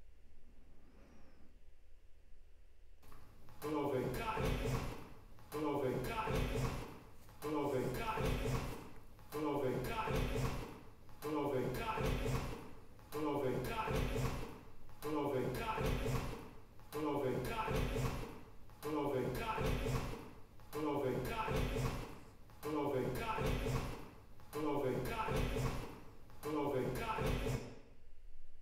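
A short snippet of recorded dialogue with reverb, replayed in a loop: from about three seconds in, the same voice phrase repeats about every 1.7 seconds, some fifteen times over. It is the ambisonics mix, heard binaurally through the 360 monitor, with the reverb narrowed to follow the speaker's position.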